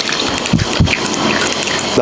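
Pasta cooking water poured from a small glass bowl into a glass bowl of egg yolk and pecorino, with a couple of low glugs about half a second in, while a fork stirs and clicks against the glass.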